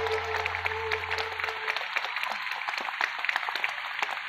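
Audience clapping throughout while the band's last held chord, with electric bass underneath, fades out about two seconds in, leaving only the applause.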